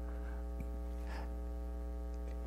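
Steady electrical mains hum with a ladder of buzzing overtones, unchanging throughout.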